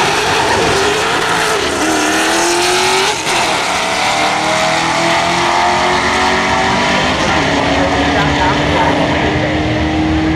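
Two cars launching and accelerating hard down a drag strip, one of them a Pontiac GTO V8. The engine pitch climbs, drops at gear changes about two and three seconds in, and then holds steadier as the cars pull away.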